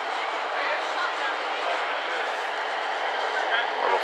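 Steady outdoor background noise with faint, indistinct voices in it.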